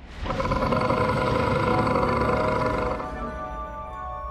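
Cartoon soundtrack: a loud roaring rumble under a held music chord starts just after the opening. About three seconds in it eases into soft, sustained ambient music over a low hum.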